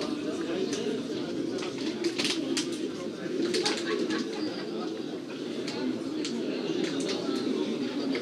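Birds calling, with short high chirps scattered throughout, over a steady low background murmur and faint distant voices.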